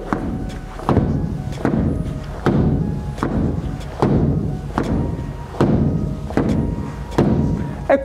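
Bare-knuckle punches thudding into a foam-padded wall at a steady pace, about nine blows, one every 0.8 s or so: wall-punching drill to condition the knuckles.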